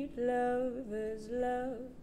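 A woman singing a slow, bluesy melody, holding each note for about half a second and stepping between pitches, with the words barely audible.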